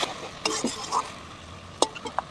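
A flat metal spatula stirring and scraping a thick spice paste around a steel kadai, with a light sizzle of the paste frying in oil after a splash of water. A few short scrapes fall in the first second, and a sharp click comes near the end.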